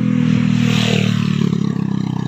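Small motorcycle's engine running in a steady low drone as it passes close by and pulls away down the road.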